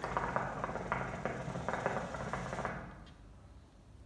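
Hookah water bubbling in the glass base during one long draw through the hose for about three seconds, then stopping. This is the draw that gets a freshly packed bowl going.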